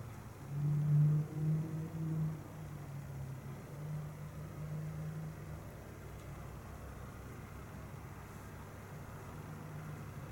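A low droning hum that swells for about two seconds near the start, then fades to a faint drone over quiet room noise.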